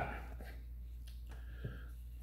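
A few faint knocks as a hand taps and handles a copper post cap on top of a wooden 4x4 fence post, over a steady low hum.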